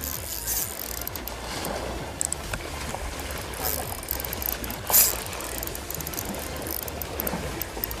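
Spinning reel being wound and rod handled while a hooked fish is fought, over steady wind rumble and sea wash, with one louder sudden noise about five seconds in.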